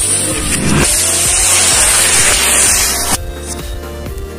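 Firework rocket burning with a loud rushing hiss for about three seconds, then cutting off suddenly. Background music with a steady beat runs underneath.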